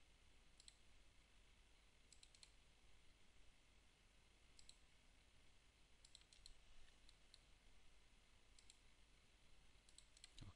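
Faint computer mouse clicks over near-silent room tone. They come singly or in quick groups of two or three, scattered every second or two.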